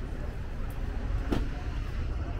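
Street noise with a steady low rumble of vehicles on a narrow town street, and one sharp click just over a second in.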